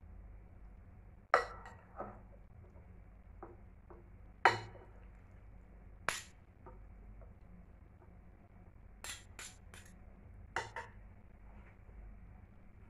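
Two metal spoons clinking against a ceramic bowl and each other while tossing a pasta salad: scattered, irregular sharp clinks, the loudest about a second in and near the middle, with a quick run of three late on.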